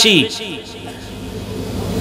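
A man's amplified speech breaks off about a quarter second in, leaving a pause filled with a steady low rumble that swells slightly before he resumes.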